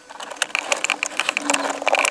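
Quick, irregular small clicks and rattles of wires and a crimped metal terminal being pushed onto a contact of a Lada Niva's fuse block by hand.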